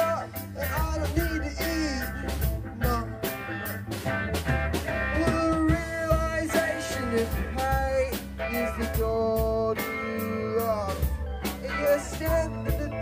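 Live rock band playing: electric guitar, bass guitar and drum kit, with a singer's voice over them and the drums keeping a steady beat.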